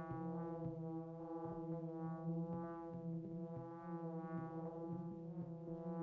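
Electronic music: a sustained synthesizer drone, one steady pitch with a rich stack of overtones, with short clicks scattered irregularly through it.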